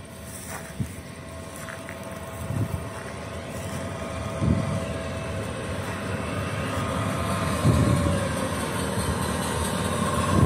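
Electric locomotive hauling passenger coaches, approaching and growing steadily louder: a steady whine from its motors and fans over the rumble of wheels on rail. The whine drops a little in pitch about three quarters of the way through as the locomotive draws level, and wind gusts buffet the microphone a few times.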